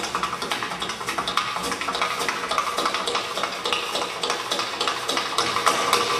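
Tap shoes striking a hard floor in a quick, dense run of taps, many per second, as an unaccompanied tap-dance solo break.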